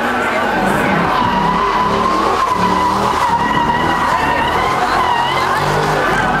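Dodge Challenger SRT8's tyres squealing in one long, wavering squeal as the car drifts around a skidpad, with its V8 engine running underneath.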